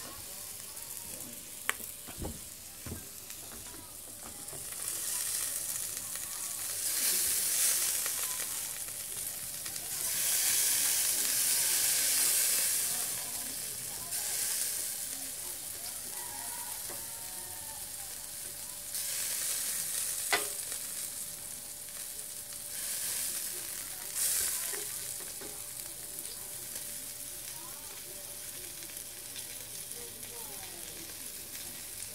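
Pork sizzling on a small charcoal grill, the hiss swelling and easing in several bouts, with a few sharp clicks.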